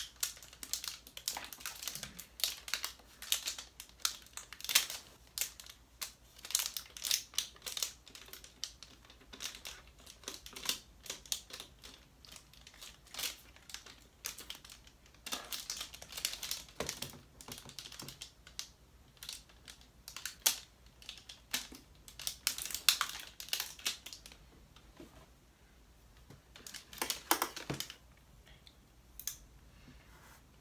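Plastic packaging film on a drone's remote controller being picked at by fingers, crinkling and clicking in short, irregular crackles, with a quieter pause about three-quarters of the way through.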